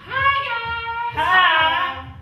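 A high voice singing two drawn-out notes, the first held steady and the second wavering in pitch.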